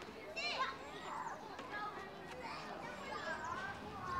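Faint voices of children playing outdoors, high-pitched calls and shouts rising and falling.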